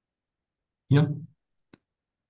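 Silence, then a man says "Yeah" about a second in, followed by two faint clicks.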